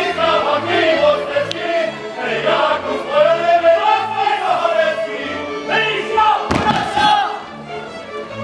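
Polish highlander (góral) folk band playing a dance tune: fiddles carry the melody over short, evenly repeated double bass notes, with a group of voices singing and calling out. A brief loud burst stands out a little over six seconds in.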